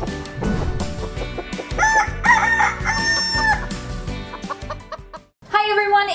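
Short animated intro jingle: upbeat music with cartoon chicken clucking and crowing sound effects over it, strongest from about two seconds in to about three and a half seconds. The music cuts out just before the end, and a woman starts talking.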